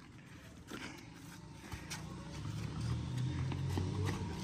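Faint outdoor background with a few soft knocks, and a low rumble that builds over the last two seconds.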